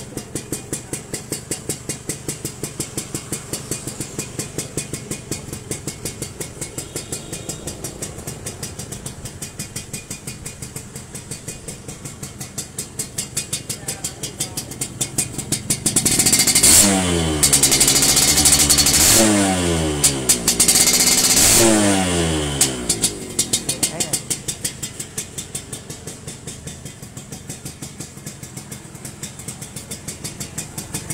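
Suzuki Sport 120 two-stroke single-cylinder engine idling with an even, quick pulse from its exhaust. About halfway through it is revved three times in a row, the pitch climbing and falling each time and louder than the idle, then it settles back to idle.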